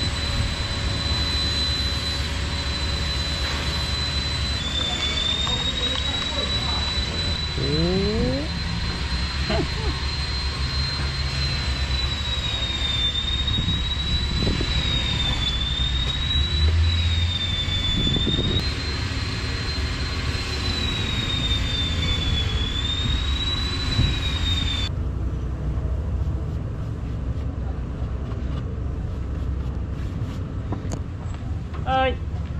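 A motor running with a steady high-pitched whine over a low rumble. The whine's pitch wavers and dips several times, and it stops about 25 seconds in.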